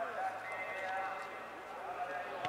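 Several voices calling and shouting over one another on a youth football pitch, none clear as a single speaker.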